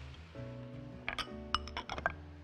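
Soft background music with sustained notes, and a few light clinks of a glass bowl knocking against the pan and spatula as grated tomato is scraped out of it.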